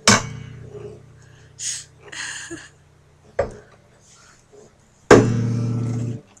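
Unplugged acoustic-electric guitar strummed once and left to ring down. About five seconds in it is strummed again, rings for about a second and is cut off suddenly. A few soft noises and a light knock come in between.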